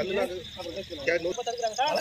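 People talking, with a steady high-pitched tone underneath.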